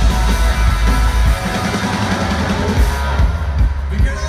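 Rock band playing live through a loud PA: electric guitars, bass guitar and drum kit. The top end drops away for a moment near the end before the full band comes back in.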